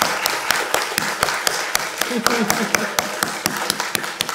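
A small audience clapping: irregular, separate hand claps rather than a dense roar of applause.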